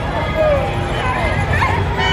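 Indistinct voices of people close by, short rising and falling snatches without clear words, over a steady low rumble.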